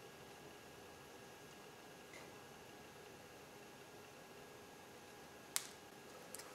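Near silence, then one sharp click near the end as homemade welded pliers work the clamp ring of a steering-shaft boot.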